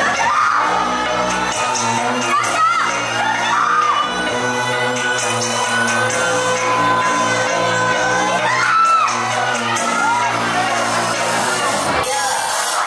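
A K-pop dance track playing loudly, starting just after the beginning, with a crowd cheering and whooping over it.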